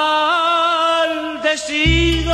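A male voice singing a long, sustained note with slight wavers in pitch on a vintage Latin American waltz recording. Deep bass notes of the accompaniment come in near the end.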